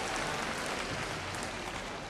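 Concert hall audience applauding, the applause dying away.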